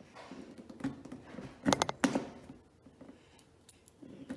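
Hands handling craft materials at a table: light rustling and a quick cluster of sharp clicks about two seconds in.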